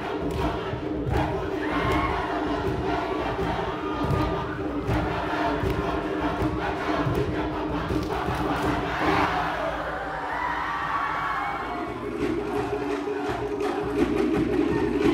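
A crowd of voices shouting and calling out together over a steady low tone, with irregular low thuds underneath.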